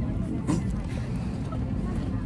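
Steady low rumble of an airliner cabin, with faint voices of other passengers in the background.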